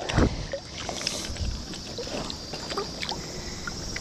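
River water sloshing and splashing around a landing net held in the current, with a louder splash right at the start and then small scattered splashes and drips as hands work the netted ayu in the water.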